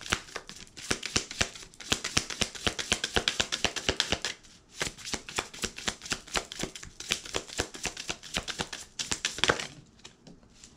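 A deck of oracle cards being shuffled by hand: a fast, continuous run of short papery card clicks, with a brief pause about halfway through.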